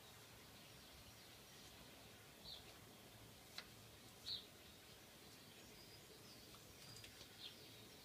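Near silence outdoors with faint, scattered songbird chirps, three short high calls standing out, and a single small click about three and a half seconds in.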